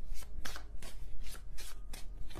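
A tarot deck shuffled by hand, a run of short papery card strokes about three a second.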